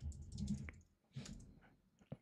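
Faint keystrokes on a computer keyboard: a run of light clicks, a short pause around the middle, then a few more.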